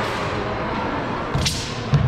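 A kung fu competitor's form on a gymnasium floor: a sharp swish about one and a half seconds in, followed by a short thud near the end, over the steady murmur of a large hall.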